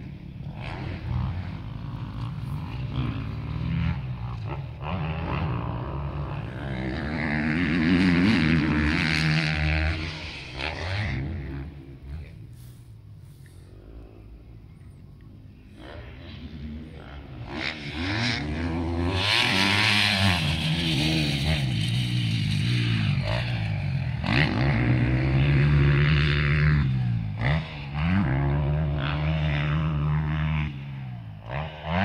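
Off-road motorcycles riding a motocross track, their engines revving up and falling back again and again as they ride past. Loudest about a third of the way in and through most of the second half, with a quieter lull in the middle.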